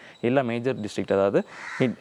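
A man speaking, with a short rasping call about three-quarters of the way through.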